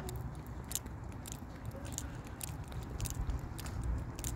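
Footsteps on a paved path, a sharp crunchy step about every half second to second, over a low rumble on the microphone.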